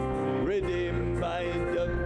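A hymn sung to electronic organ accompaniment: one voice holding long notes and sliding between them over sustained organ chords.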